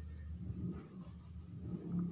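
A low, steady rumbling hum that swells slightly about half a second in and again near the end.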